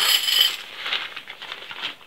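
A bundle of lightweight metal shepherd's hook tent pegs clinking and jingling together as they are tipped out of their peg bag, with a burst of ringing clinks in the first half-second and lighter clicks after.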